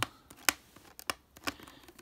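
Fingernails picking and scratching at tape on a clear plastic tube package, with a few sharp plastic clicks, the loudest about a quarter of the way in.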